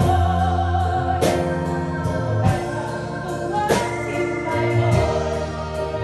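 A woman singing a musical-theatre ballad with a live band: long held notes with vibrato over bass, and a drum and cymbal hit about every second and a quarter.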